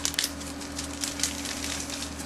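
Thin plastic parts bag crinkling as it is handled: a quick run of crackles near the start, then scattered rustles, over a steady low hum.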